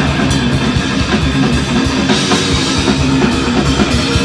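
Live rock band playing an instrumental passage: electric guitar, bass guitar and drum kit with cymbals, without vocals.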